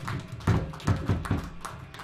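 A handful of sharp taps and knocks, about five in two seconds, on a band's stage between songs.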